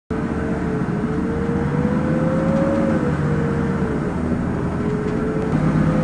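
Steady road noise of a moving car: a low engine and tyre rumble with a faint whine that drifts slightly up and then down in pitch.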